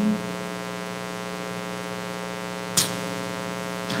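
Steady electrical mains hum carried through the pulpit microphone's sound system, with one short breath-like hiss near the end.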